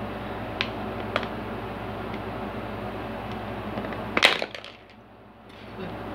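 Thin plastic water bottle crackling loudly for a moment about four seconds in as it is gripped and squeezed, raised to drink; two faint clicks come earlier, over a steady low hum.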